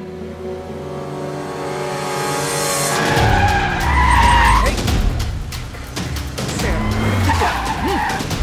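A car engine rising in pitch as it approaches, then tyres screeching loudly as it speeds past about three seconds in, with a second, shorter screech near the end. Music plays underneath.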